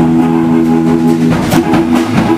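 Blues band playing live with guitars and drum kit. A chord is held for just over a second, then drum hits come back in near the end.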